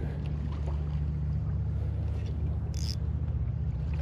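Steady low drone of a motorboat engine running on the water, with a brief high hiss about three-quarters of the way in.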